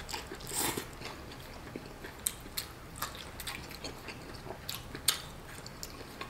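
A person chewing and biting on a mouthful of instant noodles, heard close up: scattered wet mouth clicks, with a brief louder burst about half a second in.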